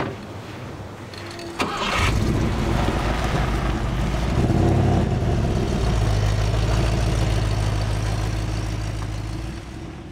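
Four-wheel-drive tour truck's engine starting about two seconds in, then running steadily and fading out near the end.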